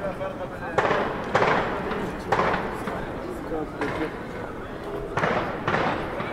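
Outdoor street sound of a pedestrian square: passers-by talking faintly over a steady background hum, cut by five short, sharp bursts of noise at irregular intervals.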